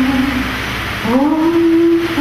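A voice singing long held notes: one note fades out, then about a second in the voice slides up into a new sustained note.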